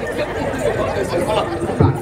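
Voices talking over one another in a chattering mix, with one short low thump near the end.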